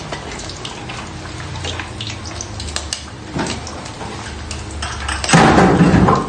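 Water running from a tap into a steel kitchen sink, a steady rush with small clinks. A short, louder burst of noise about five seconds in.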